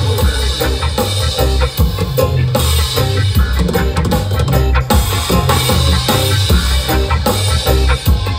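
Live reggae band playing the instrumental start of a song, driven by a drum kit and a deep, stepping bass line in a steady rhythm.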